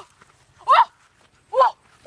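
A woman's short, high-pitched frightened cries, each rising and falling in pitch, two of them about a second apart.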